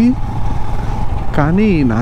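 Royal Enfield motorcycle running steadily at cruising speed, with engine rumble and wind on the microphone. A man's voice starts talking about a second and a half in.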